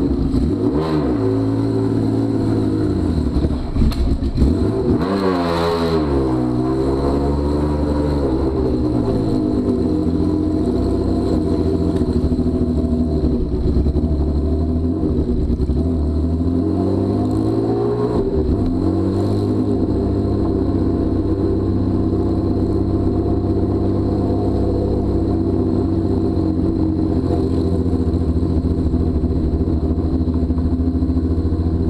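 Honda CBX 1000's air-cooled inline-six engine running through open pipes, revved up and down several times in the first twenty seconds, then settling to a steady idle.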